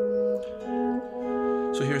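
Electric guitar playing sustained, ringing two-note intervals, with new notes picked about half a second in as the line moves into an E7 chord.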